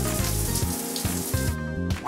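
Shower spray sound effect, a steady hiss of running water that stops about one and a half seconds in, over background music with repeating low notes.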